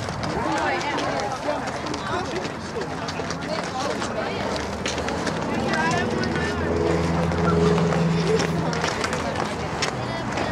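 Indistinct voices of people talking at a distance, with a low steady engine-like hum from about five to nine seconds in.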